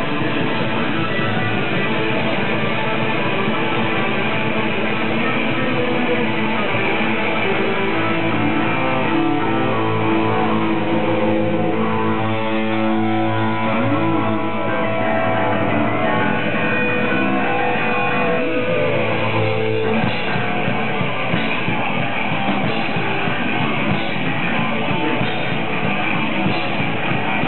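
Thrash metal band playing live: loud distorted electric guitars, with a stretch of long held notes in the middle before the busier riffing returns.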